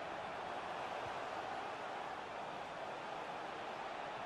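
Steady stadium background noise under a football broadcast: an even, unbroken hum with no distinct events.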